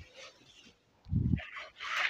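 Silk saree fabric rustling as it is handled and spread out, with a short, loud low sound about a second in.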